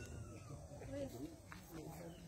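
Faint, indistinct voices of people talking, over a steady low background hum.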